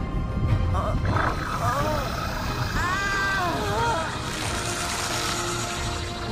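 A woman's strained groans and growls as an animated character turns into a monster, over a loud low rumble that starts suddenly and dramatic music.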